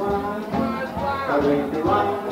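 Traditional New Orleans jazz band recording playing: a melody line that slides and bends over a steady rhythm section.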